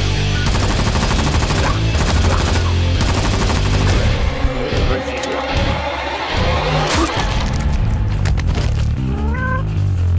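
Heavy action-film music with bursts of rapid machine-gun fire sound effects. A short rising cat meow comes near the end.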